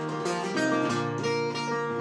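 Guitar strummed, its chords ringing on steadily.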